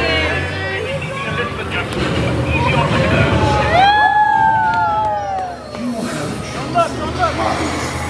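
Indiana Jones Adventure ride vehicle rumbling low and steady as it moves, with riders' voices in the first second. About four seconds in, a long wavering wail rises and falls for over a second.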